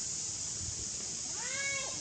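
Baby macaque giving one short cry about one and a half seconds in, rising and then falling in pitch.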